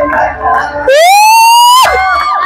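A loud edited-in sound-effect tone: one pitched note that glides upward for about half a second, holds, then cuts off suddenly, lasting just under a second; the crowd noise drops out entirely beneath it. Crowd chatter and clapping come before and after it.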